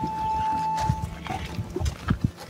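A single steady, high whistled note held for about a second, then footsteps on a dirt trail.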